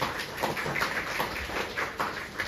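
Scattered applause from a small audience: a run of uneven hand claps at the end of a debate speech.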